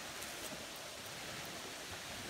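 Steady, even outdoor background hiss with no distinct event in it.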